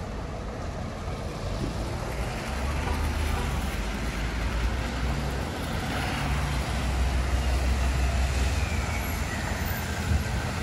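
Traffic on a slushy, wet avenue: a steady hiss of tyres on wet pavement, with a heavy vehicle's low engine rumble building from about two seconds in as it passes.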